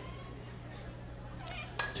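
Faint open-air ballpark background with a steady low hum, and near the end a single sharp crack of a softball bat hitting a pitch for a base hit.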